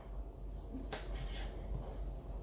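Faint sounds of a serrated knife cutting through soft yeast dough on a work surface, with one light click about a second in.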